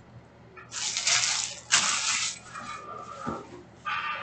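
Trading cards, plastic card holders and foil packs being handled on a table: two loud rushes of crinkly rustling about a second in, then softer scraping and a brief thin squeak, which comes again near the end.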